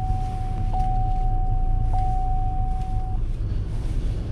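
Inside a car in an automatic car wash bay: a steady low rumble of the idling car and wash machinery, with a steady high tone that blips about every second and a quarter and stops about three seconds in.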